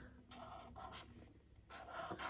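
Faint strokes of a Sharpie marker's felt tip on paper, a few short lines drawn in quick succession.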